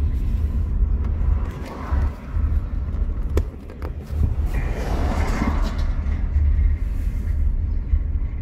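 Steady low rumble of a car's engine and tyres heard from inside the cabin while driving. A sharp click a little over three seconds in and rustling handling noise in the middle as the phone is refitted in its dashboard holder.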